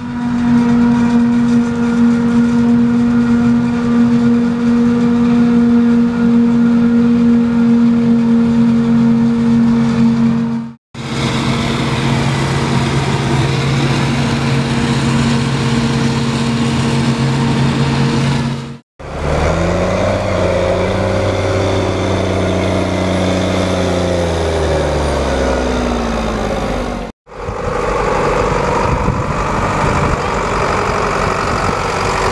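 Claas Jaguar 860 forage harvester chopping maize and blowing it into a trailer, running loud and steady with a held hum. In a later shot a machine's pitch falls slowly over several seconds as it runs down. The sound cuts off abruptly three times between shots.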